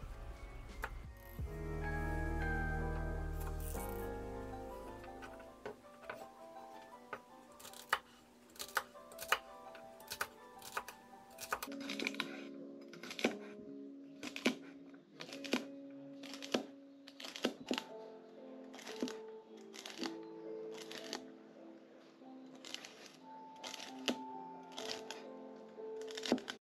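Chef's knife dicing celery on a wooden cutting board: a steady run of short chopping strokes, about one and a half a second, over soft background music.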